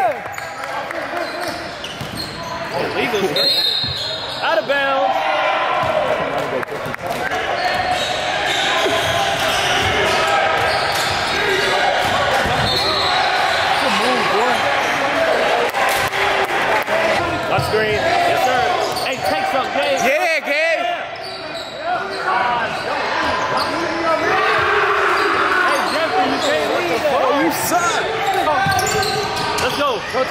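Basketball dribbling and bouncing on a hardwood gym floor during a game, with players' and onlookers' voices echoing in the large gym.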